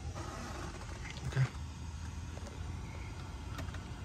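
Low, steady hum of background noise inside a parked car with the engine off, with a single spoken "okay" about a second in.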